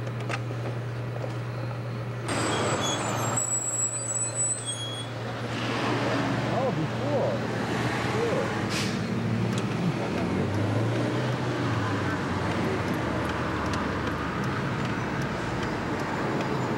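Street traffic heard from inside a Volkswagen car in slow city traffic: a steady low engine hum, then louder traffic noise from about two seconds in as a bus passes alongside, with a brief high tone a few seconds in.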